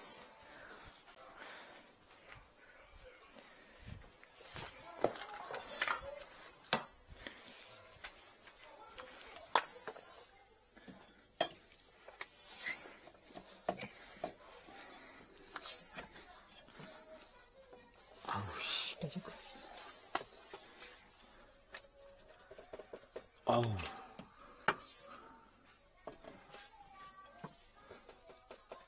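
Scattered light clicks and knocks of gloved hands and tools handling pipes and fittings under a sink cabinet, with a few brief faint murmurs of a man's voice.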